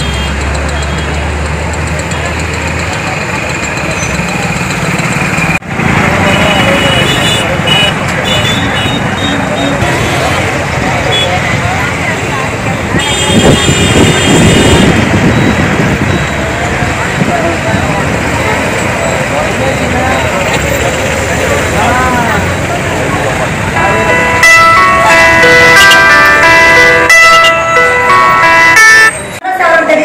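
Many voices talking at once over road traffic noise, with vehicle horns sounding several times in the last few seconds.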